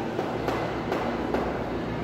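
Chalk tapping and scraping on a blackboard as numbers are written, with a few sharp ticks about half a second apart over a steady background hiss.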